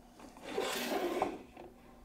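A small 3-inch FPV quadcopter being slid across a wooden tabletop, a rasping rub that lasts about a second.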